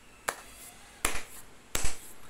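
Three short, sharp clicks about three quarters of a second apart; the last is the loudest.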